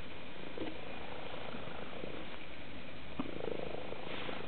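A domestic cat purring steadily, close up.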